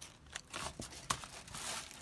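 Soft rustling and crinkling of a handmade paper junk journal being handled, with scattered small clicks as the pages are turned, louder in the second half.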